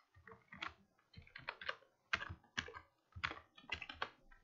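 Computer keyboard typing: an irregular run of short, quick keystrokes.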